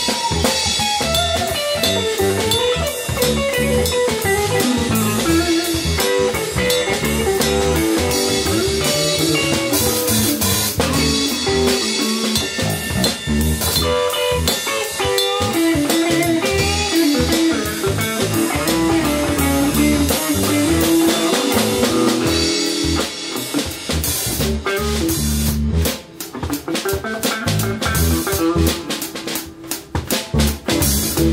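Live band jamming on a single E7 chord: a semi-hollow electric guitar solos over electric bass and a drum kit, with the bass and drums hitting accents together as the volume builds. Near the end the guitar solo winds up and the band breaks into short, separated hits.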